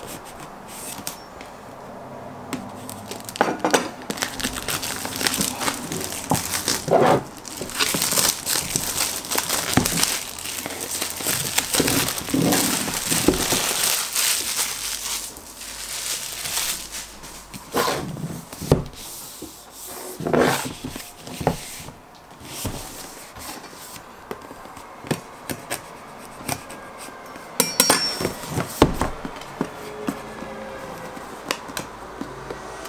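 Plastic shrink-wrap on a cardboard box being slit with a knife and peeled off, crinkling and crackling in irregular bursts. Later the cardboard box is handled and its top opened, with a few knocks on the table.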